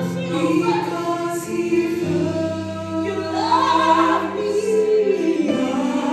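Live gospel singing: a woman's voice carrying a slow, drawn-out melody over sustained accompaniment chords, which change about two seconds in and again near the end.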